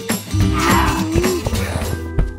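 A cartoon character's zombie moan, one drawn-out vocal call about a second long that wavers in pitch, over background music.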